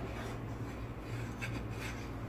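Wooden spatula scraping and stirring simmering milk in a coated pan, with three short scraping strokes, one near the start and two in the second half, over a steady low hum.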